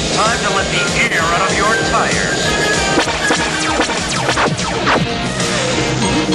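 Cartoon action music with sound effects, and short gliding vocal-like cries in the first half.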